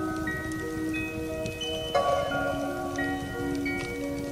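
Instrumental beat intro of a rap track: sustained chime-like chords, with a new chord struck about two seconds in.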